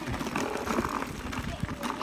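Wheels rolling over a bumpy gravel track at running pace, with wind buffeting the microphone: an uneven rumbling rush with small knocks.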